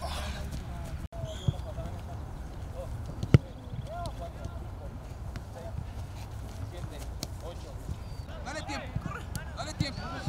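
Football being kicked on a grass training pitch: sharp single thuds, the loudest about three seconds in and a smaller one about a second and a half in, among scattered lighter touches, with faint shouts of players in the background.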